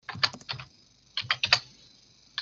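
Typing on a computer keyboard: two quick runs of keystrokes, one at the start and another about a second in, with a short pause between.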